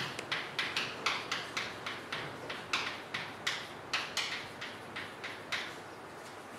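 Chalk on a blackboard while writing: a string of short, irregular taps and scrapes, two or three a second, that stops shortly before the end.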